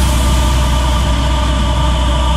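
Electronic dance music in a beatless passage: a sustained deep bass drone under a steady noise wash and a few held synth tones.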